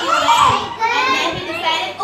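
Young children's voices chattering and calling out over one another without a break, high-pitched.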